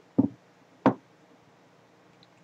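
A glass beer tumbler knocking twice on a wooden desk as it is set down; the second knock is the sharper one.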